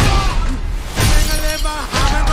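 A blow, then glass shattering about a second in as a bus window breaks during a fight, with music and voices over it.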